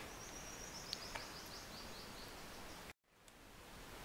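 Faint room tone and microphone hiss in a pause of narration, with two small clicks about a second in and a brief drop to dead silence about three seconds in, where the recording is cut.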